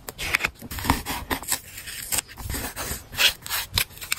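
Close-up handling of wide washi/PET tape and journal paper: a run of irregular short rustles, rubs and taps as stickers are pressed down and tape is peeled and trimmed with a craft knife.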